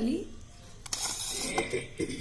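Hands rustling through fresh coriander leaves, green chillies and garlic cloves in a steel bowl, with a single light click about a second in.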